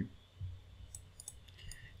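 A few faint clicks from a computer mouse as layout fields are dragged and resized on screen.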